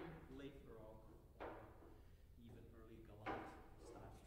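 Faint, indistinct voices talking, with two sharp knocks, about one and a half and three and a quarter seconds in.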